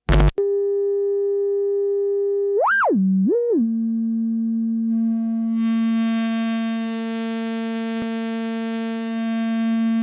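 Norand Morphos wavetable oscillator module playing a steady drone. It opens with a short click. About three seconds in, the pitch swoops up and back twice and settles lower. From about five seconds in the tone grows brighter and buzzier, with a hiss on top, as its waveform is swept continuously.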